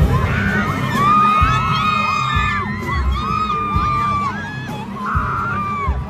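Live concert music over an arena PA with a heavy bass beat, and a crowd of fans singing and shrieking along in many overlapping held notes.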